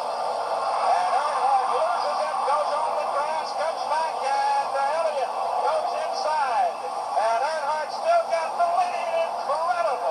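Thin, tinny playback of old television race footage: a voice over music, with the sound squeezed into a narrow middle band as if from a small speaker or worn tape.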